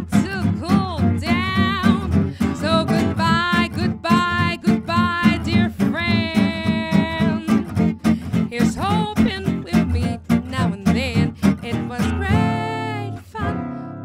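Gypsy jazz on two acoustic guitars: a steady strummed rhythm with a held, wavering melody line over it. Near the end the music thins to a few strummed chords before the tune picks up again.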